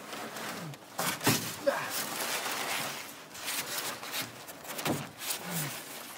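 A board being handled and slid into place against wooden framing: irregular rubbing and scraping with several knocks, the loudest about a second in and just before five seconds.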